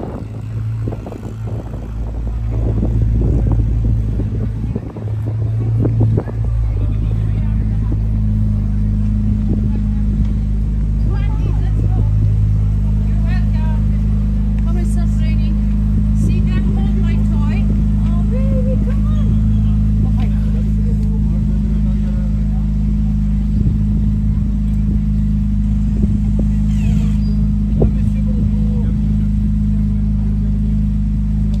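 Ferrari 296 GTB's twin-turbo V6 at low speed, uneven and surging for the first few seconds as the car rolls up and stops, then idling as a steady low drone from about seven seconds in. Voices of people nearby are heard over the idle.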